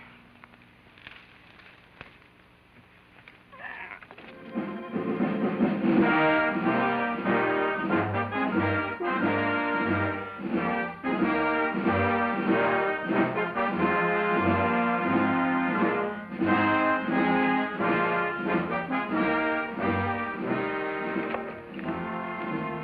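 Orchestral film score with prominent brass, entering about four seconds in after a quiet opening and then playing loudly over a repeated low bass note.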